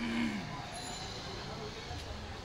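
Busy street background noise: a steady low traffic rumble under general street bustle, with a brief falling voice right at the start.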